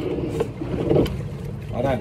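A coxswain talking through a headset microphone, in short bursts over a steady low hum.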